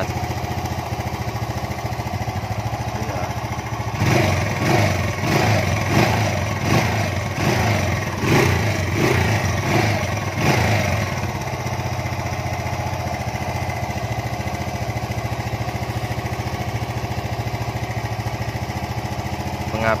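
Bored-up Honda Grand single-cylinder four-stroke engine, fitted with a 52 mm piston and a performance camshaft, idling steadily. From about four to eleven seconds in comes a run of quick throttle blips, roughly one a second, and then it settles back to idle.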